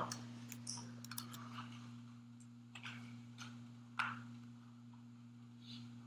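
Faint scattered clicks and taps of a stylus on a pen tablet during handwriting, the sharpest about four seconds in, over a steady low electrical hum.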